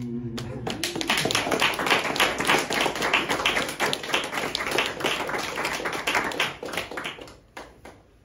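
Audience applauding after a song, dense clapping that dies away about a second before the end. The last held note of the song fades out just as the clapping starts.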